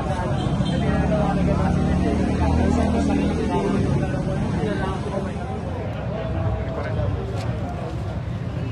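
Many people talking at once in a crowded open-air market, indistinct chatter with a steady low rumble underneath.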